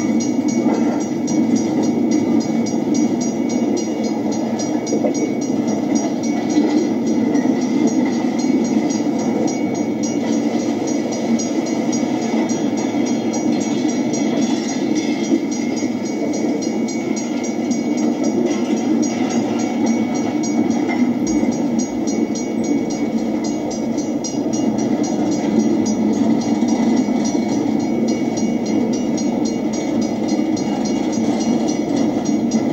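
Missouri Pacific welded rail train being shoved slowly along the track: a steady rumble of the train rolling, with a fine run of rapid high ticking over it.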